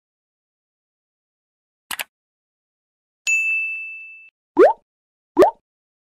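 Subscribe-animation sound effects: two quick clicks about two seconds in, then a single notification-bell ding that rings and fades over about a second, then two short blips rising in pitch.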